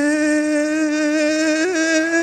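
A single loud voice holding one long, steady shouted cheer, with a small wobble in pitch near the end.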